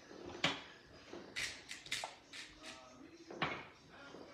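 Salt and pepper being shaken from a shaker onto raw sea scallops: a string of short, hissy shakes, about eight in all, bunched closer together in the middle.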